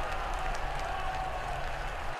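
Football stadium crowd cheering a goal, heard as a steady wash of noise.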